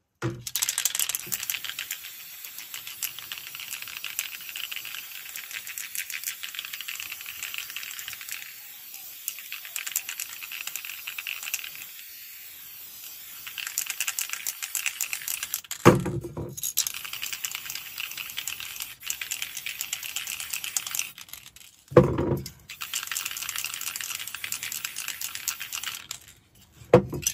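Aerosol spray paint cans hissing in long, steady sprays with short pauses. Two sharp knocks come in the second half.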